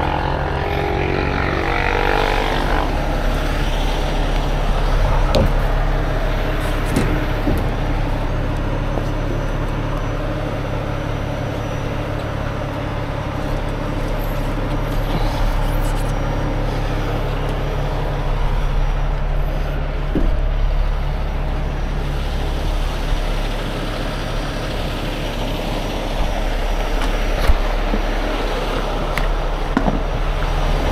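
A heavy rotator tow truck's diesel engine running steadily, driving the boom as it lifts the telehandler. A few light clicks and knocks from the rigging come through, the sharpest near the end.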